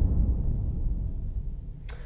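The low boom of a deep cinematic trailer drum hit sound effect, ringing on and slowly dying away. A short sharp click comes near the end.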